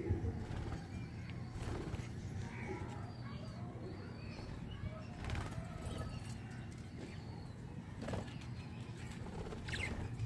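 Pigeons cooing faintly, with a few soft knocks and clicks.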